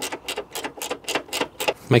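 Clicks from a plastic coolant expansion tank being fitted into its mount in a K11 Nissan Micra's engine bay: a quick, fairly even run of about six a second.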